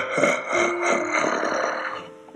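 A sly, effect-processed laugh from a toy vampire kid character, pulsing in short beats a few times a second over a hiss with a steady high tone, fading near the end.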